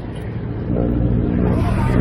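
Motor scooter engine running steadily and getting louder as it comes up alongside and overtakes.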